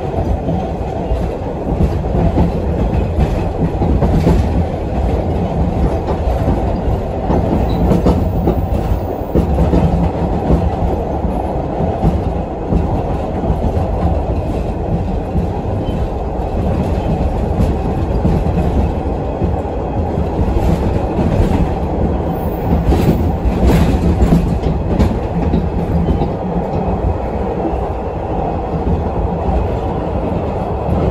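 Inside a Hawker Siddeley-built MBTA Orange Line 01200-series subway car running at speed: a steady, loud low rumble from the wheels and running gear. Sharper clacks over the rails come through now and then, bunched a little past two-thirds of the way in.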